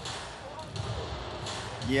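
Steady arena crowd noise, a low murmur of many distant voices. A commentator starts speaking right at the end.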